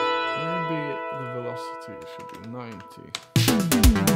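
Playback of a work-in-progress 80s synth-pop/italo-disco track. A held synth pad chord fades down over the first three seconds with some gliding low synth notes under it. About three seconds in, the drums and the full arrangement come back in abruptly.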